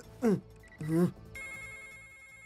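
Electronic desk-telephone ring starting about a second and a half in, a steady bright warbling tone. It follows two short vocal sounds in the first second.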